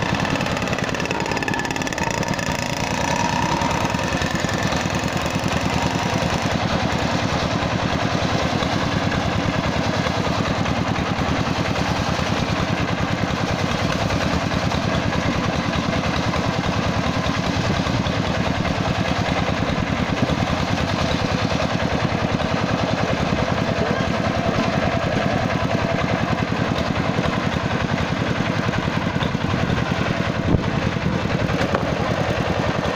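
Engine-driven circular saw rig running steadily under load as a kapok log is fed lengthwise through the blade and split into a plank.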